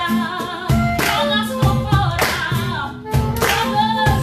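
Live acoustic music: singing over guitar and a cajón keeping a steady beat, with hand-clapping.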